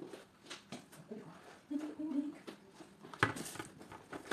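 Light handling noises from a cardboard product box, with scattered faint clicks and one sharper knock and rustle about three seconds in.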